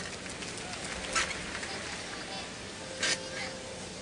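Arena crowd murmur during an uneven bars routine, with two short, sharp sounds, one about a second in and one near three seconds.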